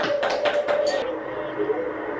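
Hand clapping, a quick run of about five claps a second that stops about a second in.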